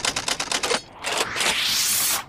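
Intro sound effects: a rapid run of typewriter-like clicks, then a rising whoosh near the end.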